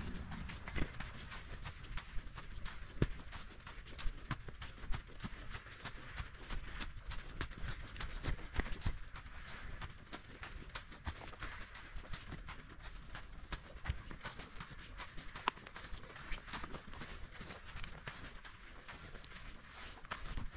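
Mountain bike travelling along a sandy dune track: a steady stream of irregular clicks and rattles from the bike over a low rumble.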